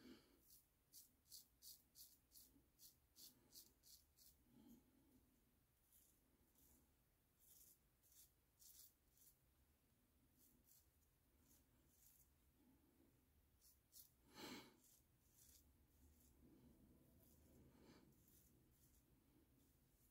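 Very faint, short scrapes of a Gillette Super Speed safety razor cutting the remaining stubble on a lathered neck, many strokes in quick runs. There is a single breath about fourteen and a half seconds in.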